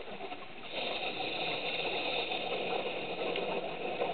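A steady mechanical whine heard underwater, growing louder about a second in and holding level over a faint crackle.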